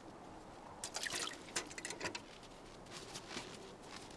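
Maple sap dripping from a tree tap into a sap bucket: a run of faint, irregular drips, thickest in the first half.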